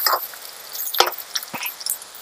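Chopped onions and green chillies sizzling in oil in a metal kadai while a spatula stirs and scrapes the pan. There is one sharp knock of the spatula on the pan about a second in, then two lighter ones.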